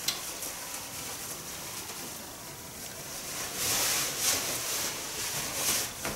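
Clothing rustling as a coat is taken off and a denim jacket is handled. The rustle is faint at first and becomes louder and hissier from about halfway in until near the end.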